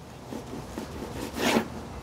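Long slicing knife sawing through the crusty bark of a smoked brisket flat, the blade scraping against a wooden cutting board, with a louder scrape about a second and a half in.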